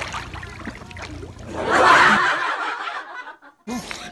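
A woman's breathy laughter, loudest about two seconds in, that cuts off abruptly, followed by a moment of dead silence.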